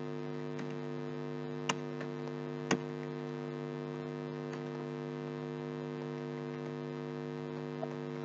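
Steady electrical mains hum in the recording chain, with two faint short clicks about a second apart near the start, likely computer keyboard keystrokes.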